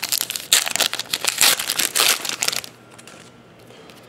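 Foil trading-card pack wrapper crinkling and tearing as it is slit open with a blade and pulled apart, a dense crackle that stops about two and a half seconds in.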